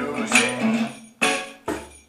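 Acoustic guitar chords strummed in a reggae rhythm, with a few sharp, separated strokes that ring out between them, over percussion with a bright jingle.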